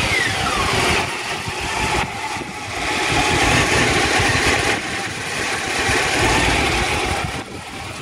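Honda Hornet 600 inline-four motorcycle engine running close to the microphone, its revs falling away just after the start, then swelling louder twice before easing off near the end.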